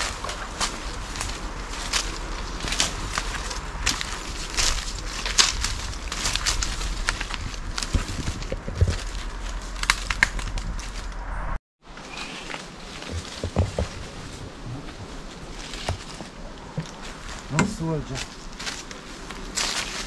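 Footsteps through dry leaf litter and brush, a steady run of irregular sharp clicks and crackles of leaves and twigs underfoot. The sound cuts out completely for a moment about halfway through.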